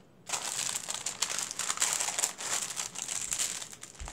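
Paper packaging crinkling and rustling as it is handled, starting a moment in and going on as a dense, continuous crackle.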